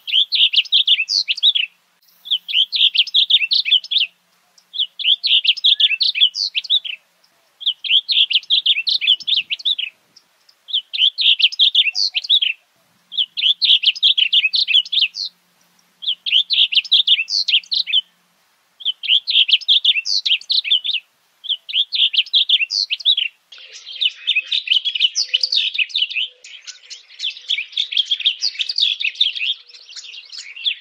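Male blue grosbeak singing: a rapid run of notes about a second and a half long, repeated every two seconds or so. In the last few seconds the phrases run together almost without a break.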